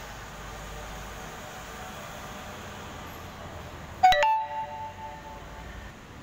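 Steady hum of a large indoor hall, broken about four seconds in by a single sudden, loud ding that rings out for about a second and a half.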